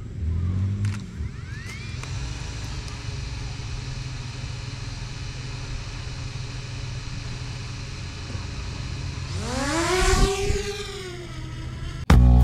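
A steady low hum, then near the end a small quadcopter drone's rotors whine up sharply in pitch and fall away again as it lifts off.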